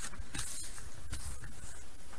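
Faint handling noise: a few light scratchy rustles and clicks as the book's pages and the handheld camera are moved.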